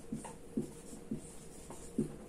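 Marker pen writing on a whiteboard: a run of short strokes, about two a second, as letters are drawn.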